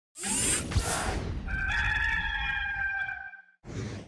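Intro sound effect: a swish, then a rooster crowing in one long held call of about a second and a half, then a second swish leading into the cut.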